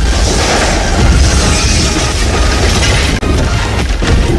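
Cinematic sound effect for an animated like-and-subscribe outro: a loud deep boom with shattering glass that carries on as a dense, bass-heavy swell.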